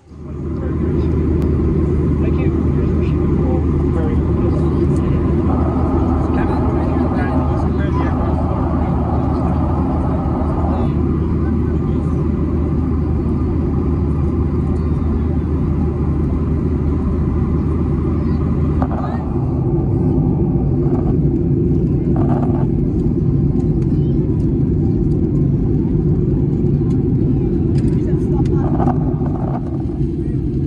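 Airliner cabin noise in flight: a steady drone of engines and rushing air. Its low hum shifts about two-thirds of the way through.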